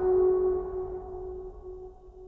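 Background music ending: one ringing note held on and fading away slowly.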